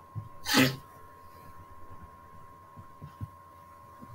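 A person sneezing once, a short loud burst about half a second in, over a faint steady whine in the recording.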